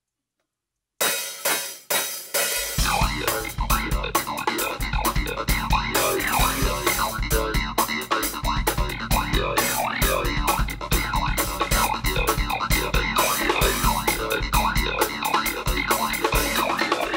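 Live electronic keyboard and drum kit starting an instrumental piece: silence, then about a second in a few sharp hits, then from about two and a half seconds in a fast, busy groove with a steady kick drum under rapid keyboard synth lines.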